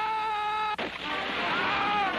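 Cartoon soundtrack: a held, slightly wavering pitched tone with many overtones, voice-like or orchestral. About 0.8 s in it is cut by a short sudden sound, and a tone that rises and falls takes over.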